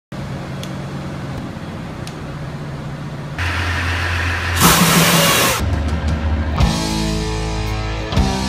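Diesel engine-room machinery on a towboat running with a steady low hum. About four and a half seconds in comes a loud rush of noise lasting about a second, and rock music comes in near the end.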